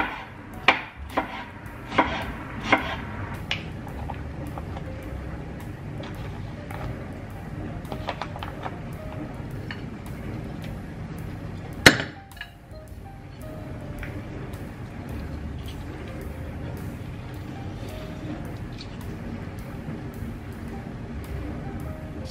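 A kitchen knife chopping on a wooden cutting board, five or so sharp strikes in the first few seconds, then soft background music with a single sharp clink about twelve seconds in.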